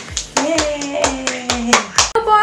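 Hand clapping in a steady beat, about four claps a second, with a woman's voice holding two long notes over it.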